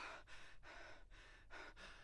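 A man's faint, quick breaths of effort, several short puffs in a row.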